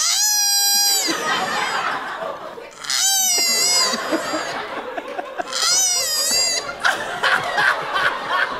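A koala's high-pitched, wavering cries, three of them a few seconds apart, with an audience laughing between and after them.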